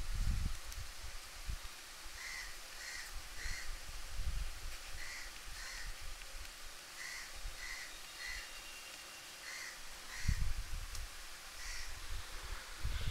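A bird calling repeatedly, short calls in runs of two or three, about a dozen in all. A few low dull thumps sound under the calls.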